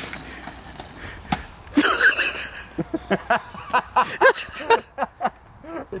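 A person laughing, a run of short quick laughs through the second half, after a brief louder outburst about two seconds in.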